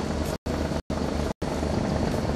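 Steady low rumble and faint hiss of open-air background noise, broken three times by brief dropouts to complete silence.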